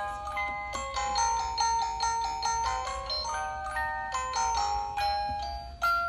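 Electronic chime-tone melody playing from a 2006 Avon fiber-optic musical scene: a steady run of clean, bell-like single notes, a few a second.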